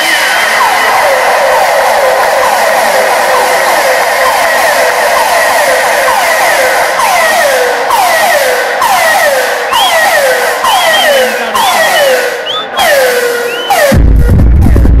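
Electronic dance track in a breakdown with the bass and kick cut out: a steady rushing noise under repeated falling synth sweeps, which come faster and start higher in the second half.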